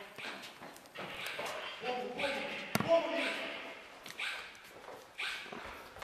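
Indistinct voices of people talking and calling out, echoing in a large concrete space. A single sharp knock sounds a little under three seconds in.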